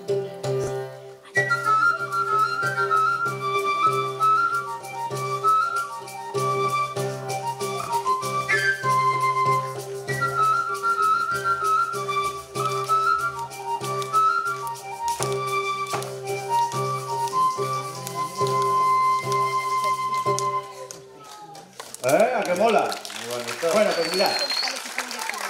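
A salterio string drum (chicotén) from the Aragonese Pyrenees, its strings struck with a stick in a steady rhythmic drone, while a pipe plays a melody over it. The tune stops about three seconds before the end, and a burst of audience noise follows.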